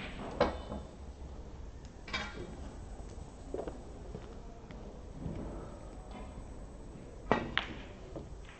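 Snooker balls clicking: near the end, a sharp click of the cue tip on the cue ball, followed a fraction of a second later by a second sharp click as the cue ball strikes the red. Earlier there are a few fainter knocks and clicks.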